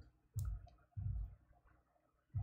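Knitting needles clicking as stitches are worked: a sharp click about half a second in and a fainter one just after, among soft low bumps of the hands and work being handled.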